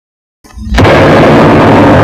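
Silence, then about half a second in a sudden, very loud, heavily distorted blast of noise from the logo's soundtrack that swells up within a fraction of a second and stays at full loudness.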